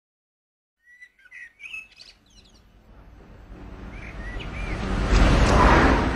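Birds chirping in short gliding calls, then a car's running noise rising steadily as it approaches, loudest near the end.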